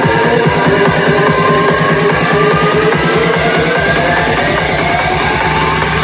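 Psytrance DJ set at full volume: a fast, even rolling bassline under a synth sweep that rises steadily in pitch. About five and a half seconds in, the pulsing bass gives way to a held low tone.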